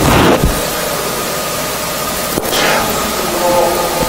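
Steady loud hiss, with a short rustling burst at the start and another about two and a half seconds in, and a faint, distant voice near the end.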